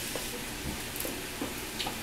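Chicken breasts and mushrooms sizzling steadily in a frying pan of oil and chicken stock over a gas flame, with a few light clicks of metal tongs in the pan.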